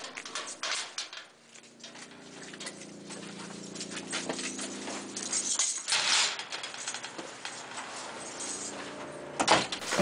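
Keys jangling and a metal mesh security gate rattling and clanking as it is unlocked and pulled open, in irregular clicks and clatters with a noisier scrape near the middle.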